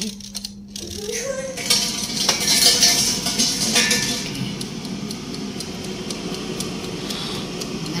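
Perrysmith PS1520 air fryer starting up after its timer knob is set: the fan spins up about a second in, then runs with a steady whirring hum and rushing air, a sound the owner finds unusual.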